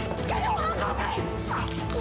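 A woman's muffled cries, stifled by a hand clamped over her mouth: several short whimpering cries that rise and fall in pitch, over background music with sustained notes.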